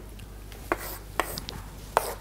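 Chalk on a chalkboard during writing: a few sharp taps with light scratching strokes between them.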